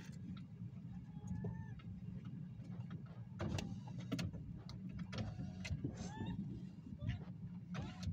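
Low, steady rumble of an idling vehicle, with a few short falling chirps and scattered sharp clicks, a cluster of them a little past the middle.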